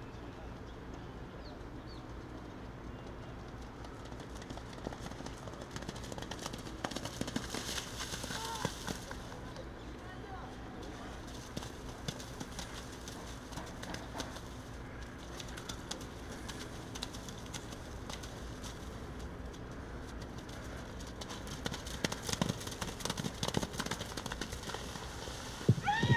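A Crioulo horse's hooves working through wet arena mud, with scattered soft thuds and clicks. Behind them run indistinct distant voices, a little louder about a third of the way in and again near the end, over a steady low hum.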